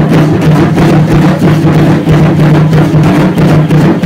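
Drum-led music for Aztec dance, with a steady low tone underneath and fast, rhythmic rattling and beats in time with the dancing.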